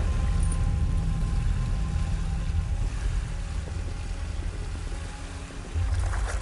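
Small sea waves washing onto a beach: a steady rush of surf with a deep rumble, swelling louder near the end, over soft background music.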